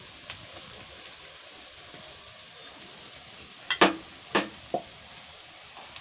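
Onion and spice masala sizzling in a metal wok. A few sharp metal knocks of the spatula against the pan come close together about four seconds in.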